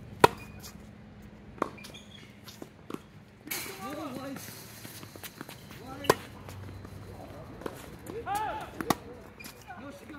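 Tennis balls struck by racket strings: sharp pops a few seconds apart, the loudest just after the start and another strong one about six seconds in, with fainter hits and bounces between.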